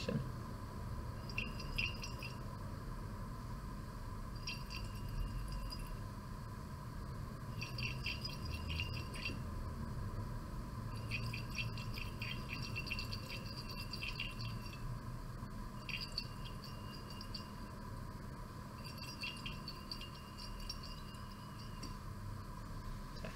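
Glass conical flask being swirled under a burette tip during a titration, giving short bursts of faint rapid glass rattling every few seconds.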